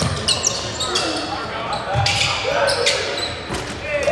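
Live basketball game sound on an indoor court: the ball bouncing on the hardwood in low thuds, short high sneaker squeaks, and players' and spectators' voices.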